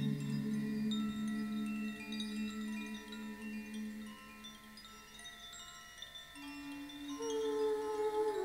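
Wind chimes tinkling, with many short high ringing notes scattered throughout, over held low tones that fade away in the first few seconds. It grows quiet in the middle, and new sustained tones come in near the end.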